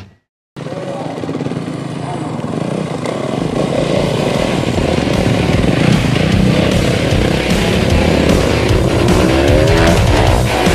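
Dirt bike engines running and revving, after about half a second of silence at the start; near the end an engine revs up, rising in pitch.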